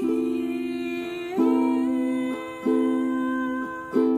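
A woman hums a slow, wordless melody over chords played on a small plucked string instrument. The chords are struck about six times, each fading before the next.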